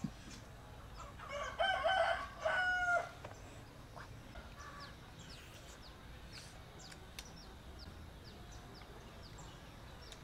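A rooster crowing once, a call of about a second and a half beginning a second and a half in. Faint short high bird chirps follow.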